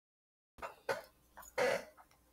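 A person coughing and clearing their throat in a few short bursts, the loudest near the end.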